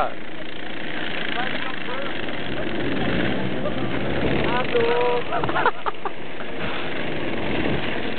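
Racing karts' engines running on the circuit, a steady noisy drone under spectators' voices, which call out loudest about halfway through, with a few sharp knocks just after.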